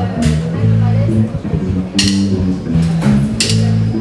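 A live blues trio playing a song's opening. An electric upright bass plays a line of distinct stepping low notes under drums and electric guitar, with cymbal strikes near the start, about halfway through and near the end.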